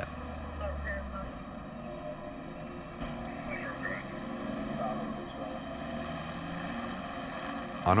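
Street traffic ambience: a steady hum of vehicles, with a low rumble in the first second.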